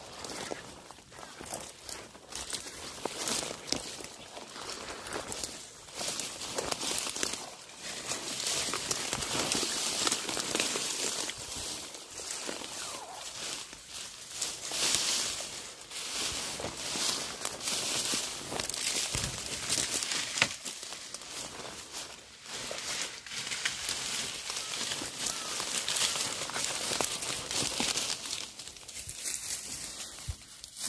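Dry reeds and dead grass rustling and crackling without pause as they are pushed through and trampled.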